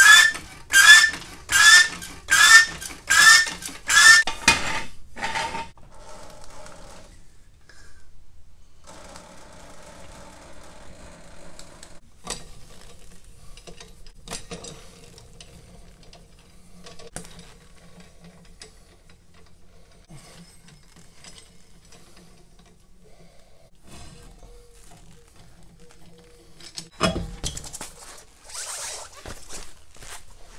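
Floor jack being pumped: a run of even metallic strokes, about one every 0.7 s, each with a short rising squeak, stopping about four and a half seconds in. Then faint small metallic clinks as lug nuts are turned off by hand, and a single loud thud near the end.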